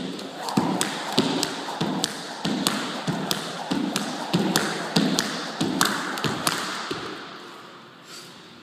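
Jump rope doing double unders on a hard floor: the rope ticks against the floor between the landing thuds, one jump about every 0.6 s. The rhythm stops about a second before the end.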